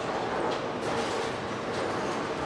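Bowling alley din: bowling balls rolling down the lanes and pins clattering across many lanes, a steady rolling rumble with scattered clatter.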